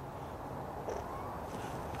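Faint steady background noise with one faint, brief animal-like call that rises and falls in pitch about half a second in.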